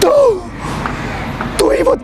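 A man's short gasp of shock, a voiced cry falling in pitch, at the very start. After a brief quieter pause, he begins speaking near the end.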